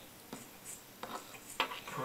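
A metal spoon tapping and scraping in a small plastic yogurt cup: three light clicks, the last and loudest near the end.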